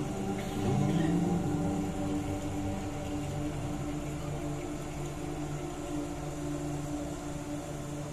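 A live ensemble holding a steady sustained chord, a drone with no melody. A phrase from the previous passage fades out in the first second or so.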